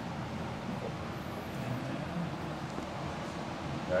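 Steady background room noise with no distinct sounds.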